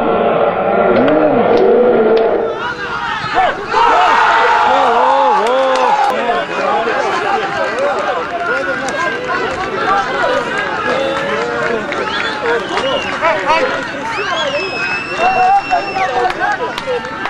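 Players and spectators shouting and cheering over one another in celebration of a goal, many voices at once. A long, steady, high whistle comes in near the end.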